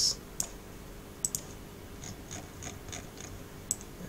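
Computer mouse clicking: a few sharp single clicks, two of them in quick succession about a second in, with softer faint ticks between, over a low steady hum. There is a brief hiss at the very start.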